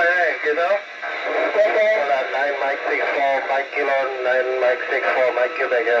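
Amateur radio operators' voices heard over an FM satellite downlink from SO-50, exchanging call signs and signal reports, in continuous speech with steady background hiss.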